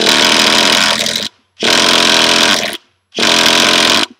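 Three attempts to start a Traxxas 3.3 nitro engine, each a loud mechanical burst of about a second that stops abruptly. With the car on the ground the failed clutch stays engaged, so the engine cannot run freely and will not keep going.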